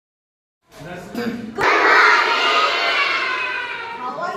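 A large group of young children calling out together in unison, starting after a brief silence and loud from about a second and a half in.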